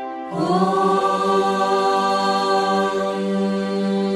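Devotional background music: a single long chanted 'Om' comes in just after the start and is held steadily on one pitch over the instrumental track.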